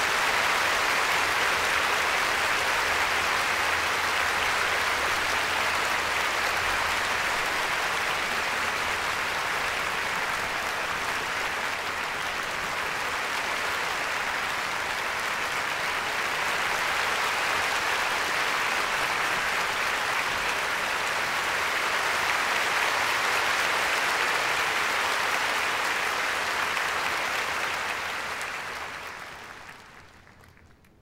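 Large concert-hall audience applauding steadily, a dense even clapping that dies away over the last two seconds.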